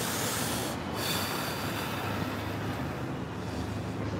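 Steady city street noise: traffic running along a downtown street.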